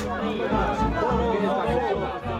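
Folk music with a wavering melody over a steady, regular beat, mixed with the chatter of an outdoor crowd.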